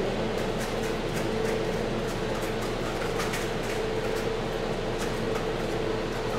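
Steady hum of a room fan or air conditioner running, with a persistent tone in it and faint, irregular light clicks scattered over it.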